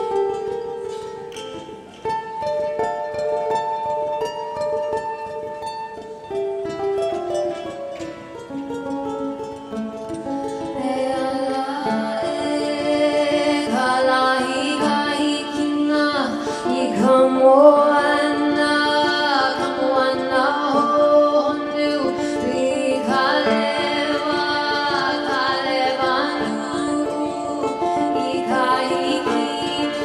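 Solo ukulele picked fingerstyle, single notes and chords. About ten seconds in, a woman's voice comes in singing a flowing melody over the ukulele.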